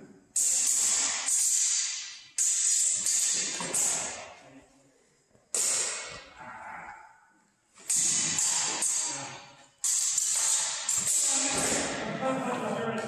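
Longswords clashing in bouts of sparring: about ten sharp metallic strikes in quick clusters, each ringing and dying away over about a second.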